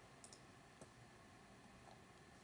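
Near silence with a few faint clicks in the first second: a computer mouse being clicked while files are moved.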